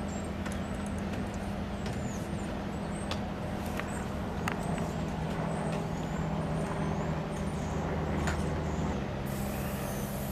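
Steady low engine drone, swelling slightly before cutting down near the end, with faint high chirps and scattered small clicks over it.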